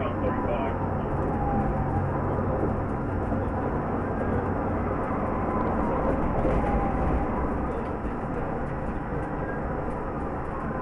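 Steady engine and tyre-road noise inside a police cruiser driving at highway speed in a pursuit, with faint gliding tones twice.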